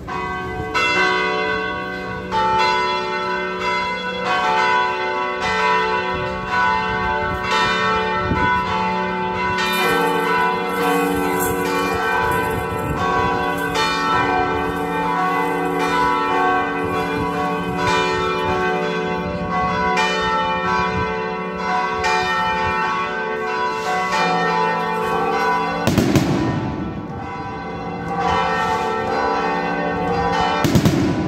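Cathedral bells ringing a rapid festive peal (repique): many bells of different pitches struck again and again, their tones overlapping and ringing on. Two loud bangs burst out near the end.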